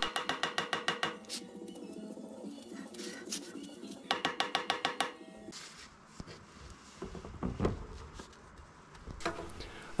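Rapid metallic tapping of a mallet knocking a galvanised hubcap onto a wheel hub, dying away after about five seconds.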